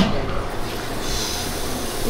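Waffle batter poured from a cup onto the hot plate of a waffle maker, giving a brief hiss about a second in over a steady room hum.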